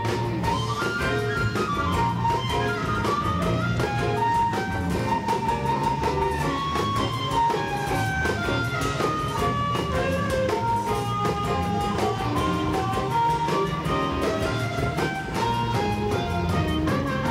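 Amplified blues harmonica solo, cupped against a handheld microphone, playing quick runs with bent, gliding notes over a live band with electric guitar and drums.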